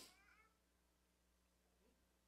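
Near silence: room tone during a pause in speech, with only a few faint, brief pitch glides in the first half-second.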